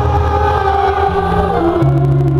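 Live piano ballad: a man's voice holding sung notes over sustained grand piano chords.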